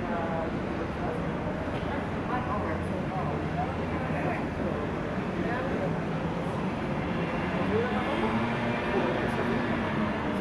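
City street ambience: a steady low rumble of traffic with indistinct voices of passers-by.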